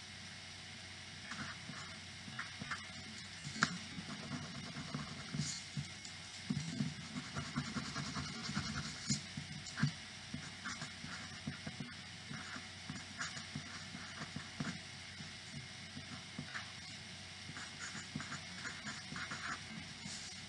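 Pencil writing on paper: faint, irregular scratches and small taps of the lead as words are written out, with light handling noise beneath.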